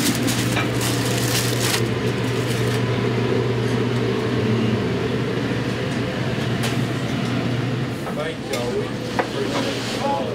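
Aluminium foil crinkling in the first couple of seconds as the foil cover is peeled back from a pan of cooked steaks, over steady room chatter and a constant low hum.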